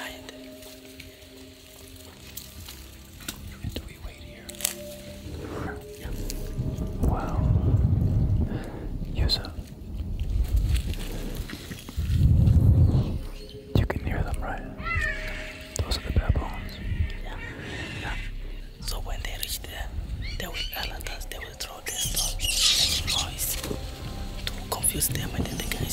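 Hushed whispering close to the microphone over a low, steady music drone, with two loud breathy rumbles in the middle and a few high squeaky sounds near the end.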